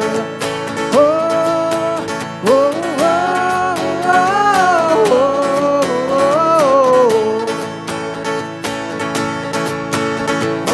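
Live worship band song: strummed acoustic guitar and keyboard under a sung melody with long held notes that slide up and down.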